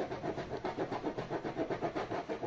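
Kitchen knife sawing back and forth through the wall of a plastic jug, a fast, even scraping of about six or seven strokes a second. The knife seems blunt.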